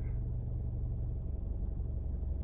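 Steady low rumble of a car's idling engine, heard from inside the cabin.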